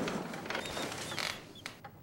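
A loud rushing noise dies away over the first second and a half. Short creaks, squeaks and a few sharp clicks follow.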